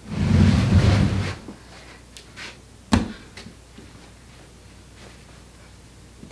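Rustling and bumping for about a second as a person moves on carpet and shifts a leather ottoman, then one sharp knock about three seconds in.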